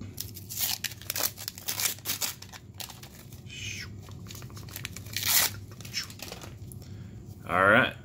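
Wrapper of a 1990 Topps Traded baseball card pack being torn open and crinkled: a quick run of rips and crackles in the first couple of seconds, then one louder rip about five seconds in as the cards come out.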